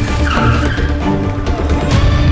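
Tense film score, with a police jeep's tyres squealing briefly as it brakes hard near the start.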